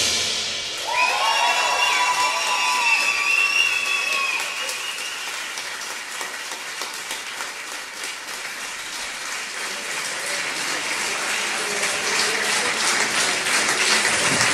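Audience applause after a jazz number, with a few sustained high tones in the first few seconds. The applause fades somewhat in the middle and builds again near the end.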